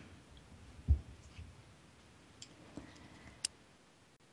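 A soft low thump about a second in, then a few faint, sparse computer mouse and keyboard clicks.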